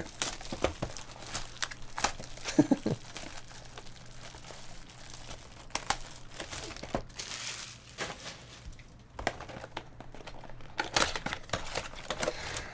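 Plastic shrink wrap on a trading card box crinkling and tearing as it is pulled off by hand, in irregular crackles.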